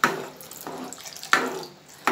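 Water poured in a stream from a steel bowl into a pan of thick cooked dal while a ladle stirs it, thinning the dal. It comes in two surges, one at the start and one just over a second in, and tails off near the end.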